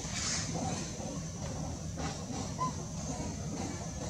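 Steady outdoor background noise: a low rumble with a thin high hum over it, and one brief faint rising chirp about two and a half seconds in.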